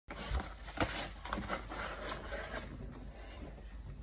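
Soft rubbing with a few light knocks in the first second and a half; no piano notes are played.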